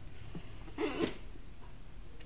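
Quiet room with a low steady hum; about a second in, a short breathy sound and a single sharp click from the oscilloscope's sweep-speed switch being turned.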